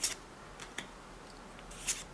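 Trading cards sliding against each other as they are moved one by one from the front of a small stack to the back: a few short swishes, the loudest near the end.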